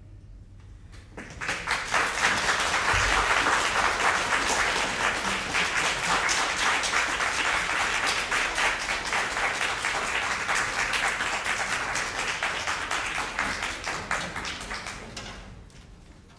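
Audience applauding, starting about a second in and dying away near the end.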